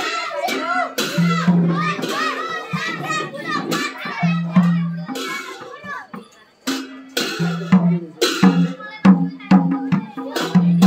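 Live Nepali folk music: madal hand drums beating a steady rhythm with voices over it and children's voices around, dropping off briefly a little past the middle.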